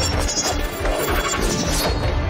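Dramatic action score mixed with fight sound effects: repeated hits and swishes of a weapon.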